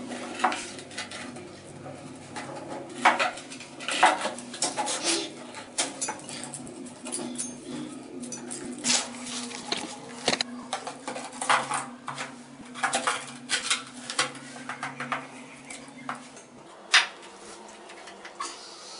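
Irregular sharp clicks and knocks of ceramic tiles and tiling tools being handled while setting wall tiles, over a steady low hum.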